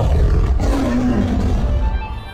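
A big cat's roar, tiger-like, over music. It starts loud at once, its pitch slides down through the middle, and it eases off near the end.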